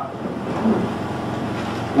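Steady background noise of a meeting hall, an even hiss with a faint low hum.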